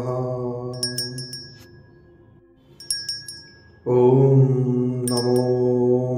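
Devotional chanting of a Hanuman mantra, the voice held long on each line, with small clusters of bright chimes struck over it. The chanted line fades away by about two seconds in, a chime rings in the pause, and a new line of chant begins about four seconds in.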